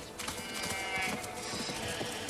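A farm animal's call lasting about a second, over faint background noise.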